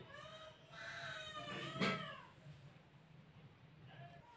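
A faint, high-pitched, drawn-out call in the background, lasting about two seconds with a slight rise and fall in pitch. It then fades to near quiet.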